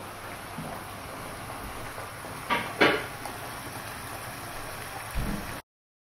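A pan of chicken curry simmering on a gas hob, a steady sizzling hiss, with two light knocks about halfway through and a low bump near the end before the sound cuts off abruptly.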